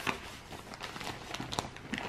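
Plastic packaging crinkling and rustling in short, irregular crackles as hands open a mailing bag and pull out the plastic-wrapped clothes inside.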